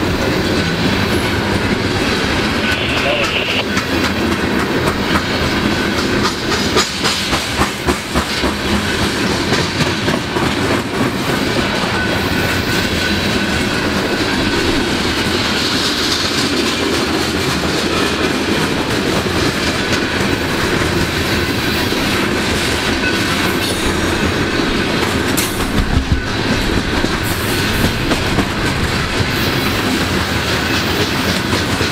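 Freight cars of a coal train rolling past at speed: a steady rumble of steel wheels on rail with clickety-clack over the rail joints, a few sharper clatters about a quarter of the way in and again near the end, and faint wheel squeals now and then.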